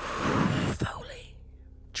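A woman exhaling hard into a close microphone, a long breathy sigh that ends about three-quarters of a second in and is followed by fainter breathing.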